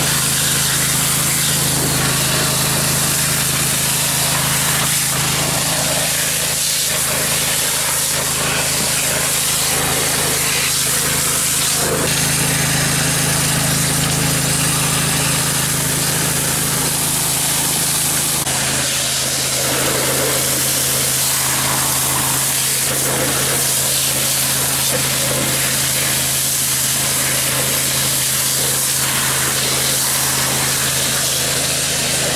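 A dredge water-pump engine running steadily, with water hissing from a pressure nozzle and pouring from a pipe outlet into a gravel hole. About two-thirds of the way through, the engine note steps slightly lower.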